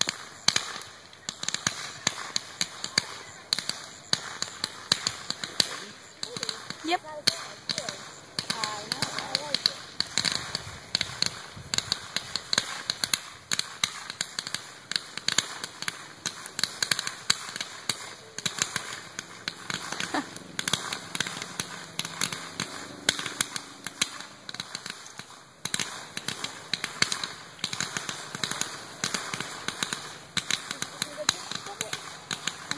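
Fireworks crackling: a dense, continuous run of rapid sharp pops from crackle-effect stars and comets, with louder pops standing out about every second.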